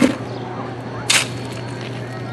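A steel shovel scooping coal from a pile and tipping it into plastic buckets: two short, sharp crunches, one at the start and one about a second in. A steady low hum runs underneath.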